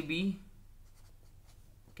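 Felt-tip marker writing on paper: faint scratchy pen strokes as letters are drawn.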